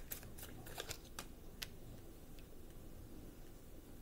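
Tarot cards being handled in the hands, giving a few light, sharp card clicks in the first second and a half, then faint.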